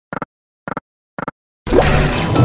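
Online slot game sound effects: three short reel-stop clicks about half a second apart, then, near the end, a loud ringing effect as a wild symbol expands over a reel.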